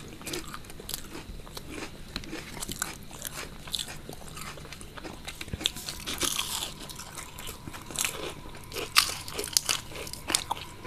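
Close-miked crunching and chewing of crisp deep-fried snacks, a run of crackly bites with the loudest crunch about nine seconds in.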